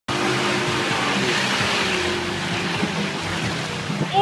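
SUV drifting on a dirt field: the engine runs under load beneath a loud, steady rushing hiss of spinning tyres and spraying dirt, which eases slightly toward the end. Music plays underneath.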